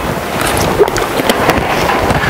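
A steady rushing noise with scattered small clicks.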